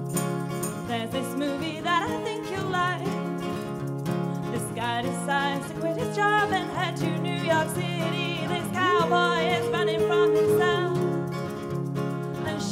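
Live acoustic band playing: acoustic guitar and keyboard with percussion, and a woman singing wavering notes, holding one long note near the end.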